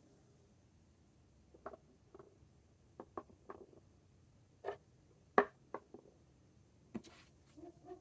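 Small plastic ink sample vials set down one by one on a tabletop while paper swatch cards are arranged: about ten light, irregular taps and clicks, the sharpest about halfway through.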